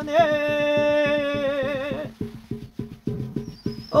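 A shaman's ritual chant (muga) holds one long sung note with a wavering vibrato, over a steady rapid drum beat. About halfway through the voice stops and the drumming goes on alone, with a faint high ringing near the end.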